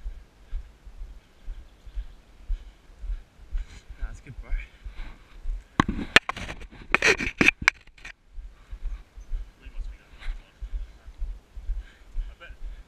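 Wind buffeting the camera microphone during a fast downhill ride, as an uneven low rumble. A louder stretch of rushing noise with sharp crackles comes about six to eight seconds in.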